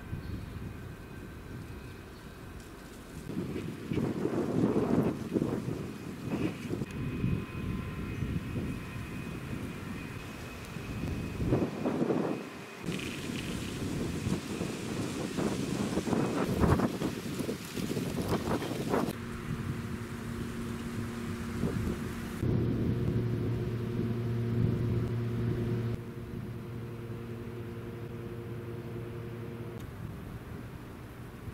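Outdoor ambience with gusts of wind rumbling on the microphone. From about two-thirds of the way in, a steady low machine hum takes over.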